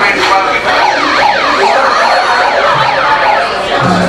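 Handheld megaphone sounding a siren: a run of quick up-and-down wails, about two a second, starting about a second in.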